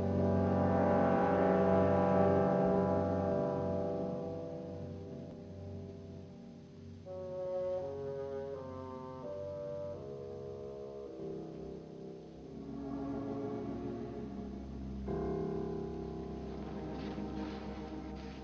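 Dramatic film score music. Loud sustained chords swell in the first few seconds and fade, followed by a slow melody of held notes and low sustained chords.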